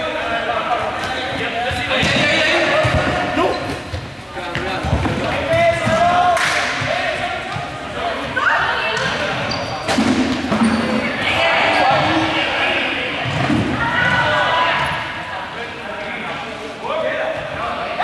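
Balls bouncing and thudding on a sports-hall floor at irregular intervals, mixed with players' voices, all echoing in a large gymnasium.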